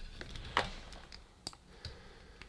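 A few faint, sharp clicks of plastic and cable being handled: a laptop power supply's barrel-jack plug and multimeter probe leads picked up and brought together for a voltage test.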